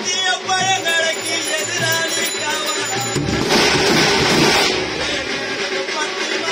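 Live drum-band music: a wavering melody line over steady bass-drum beats, broken from about three seconds in by a loud burst of heavy, noisy drumming that lasts a second and a half before the melody returns.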